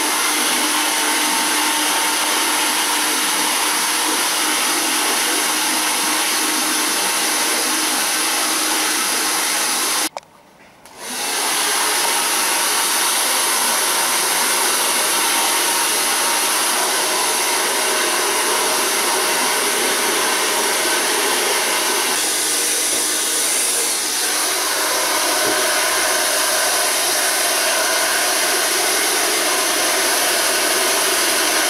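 Hand-held hair dryer running steadily as it blows on a person's hair; the sound drops out for about a second roughly ten seconds in.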